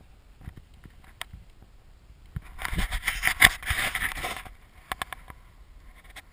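A burst of rushing, scraping noise lasting about two seconds in the middle, loudest around three and a half seconds in, with scattered sharp clicks before and after.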